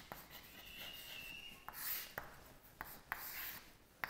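Chalk writing on a blackboard: faint scratching strokes, broken by several short taps as the chalk meets the board, with one louder stroke about two seconds in.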